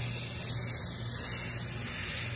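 Aerosol can of Rust-Oleum 2X flat white spray paint spraying in one continuous, steady hiss, laying down a coat of white paint.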